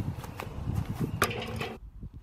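Wind buffeting the microphone, then, a little past a second in, a football striking a hanging steel gong target: a metallic clang that rings briefly before cutting off.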